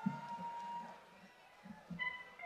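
A faint held electronic tone that fades out a little over a second in, with low murmuring underneath.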